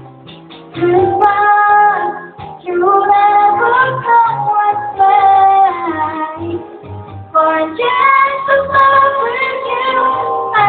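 A girl singing into a handheld karaoke microphone over a backing track with a bass line. She holds long notes, coming in after a short gap at the start.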